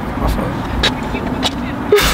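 Steady low rumble inside a car, with a few light clicks and a short sharp sound at the very end.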